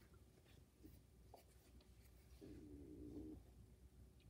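Near silence: quiet room tone with a few faint clicks and a brief faint hum lasting about a second, starting about two and a half seconds in.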